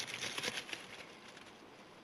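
Faint rustling and small crackles of leaf litter and low plants as a bolete mushroom is cut and picked from the forest floor with a knife. The handling fades to quiet about a second in.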